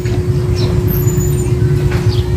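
A steady low rumble with a constant hum running through it, over which a few short, falling bird chirps sound.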